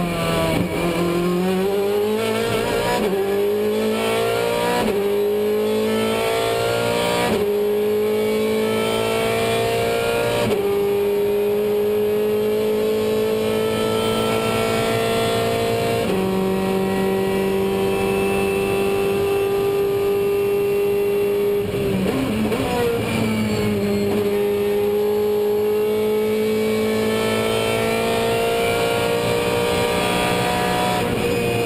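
Race car engine heard from inside the cockpit, accelerating hard through several quick upshifts and then running at high revs. About 22 seconds in, the revs drop briefly as the car brakes and shifts down, then the engine pulls up again under power.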